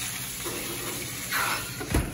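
A short scraping noise as the frying pan goes onto the rack of a commercial gas range oven, then the oven door shutting with a sharp knock right at the end, over a steady hiss.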